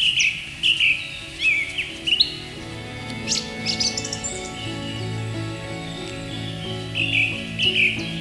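Songbird chirping in short, quick, repeated falling notes, pausing after about two seconds and returning near the end. Soft sustained background music swells underneath in the middle.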